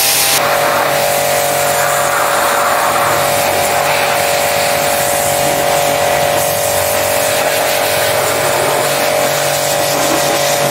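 Portable electric pressure washer running steadily, its motor hum under a hiss of spray. The sound shifts abruptly about half a second in, then holds steady.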